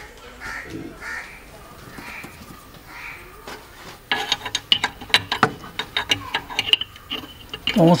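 Crows cawing a few times, then from about four seconds in a quick run of sharp metallic clicks and clinks from hand tools working on a car's battery terminals under the bonnet.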